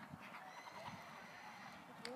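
Faint, muffled hoofbeats of a horse cantering on an arena's sand footing.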